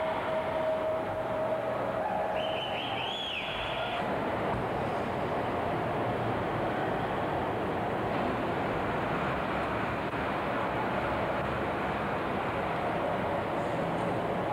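Steady rushing noise of a moving vehicle, with a brief high warbling tone about three seconds in.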